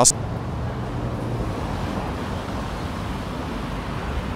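City street traffic noise: a steady wash of road noise from passing cars.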